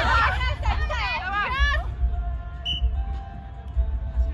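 Several people calling out and chattering over a steady low outdoor rumble. About halfway through the voices stop, leaving faint steady background music and the rumble.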